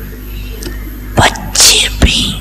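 A woman's voice close on a microphone in slow, halting speech: a short sharp sound just past a second in, then a loud hissing sibilant or breath, over a steady low hum.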